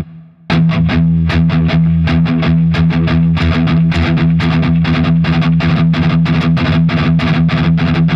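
Distorted Gibson SG electric guitar played with gallop picking on a single palm-muted low note: a hard accented downstroke followed by two lighter strokes, repeating in a fast, even chug that speeds up. It breaks off briefly about half a second in, then runs on.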